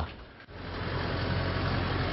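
Engine of a Kia Bongo light cargo truck running at low speed as the truck rolls slowly, a steady low hum that sets in about half a second in.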